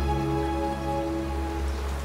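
Background music score: soft sustained notes held over a low steady drone, the chord shifting slowly, with a faint even hiss beneath.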